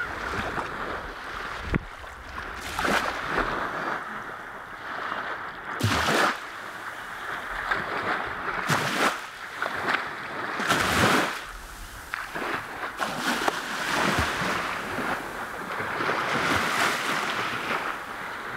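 Small waves washing onto a sandy beach in repeated swells, with gusts of wind buffeting the microphone.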